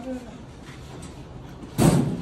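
Scuffle at close range: low rustling and movement, then near the end a single loud thump of a quarter second or so as a man is forced down against the wall.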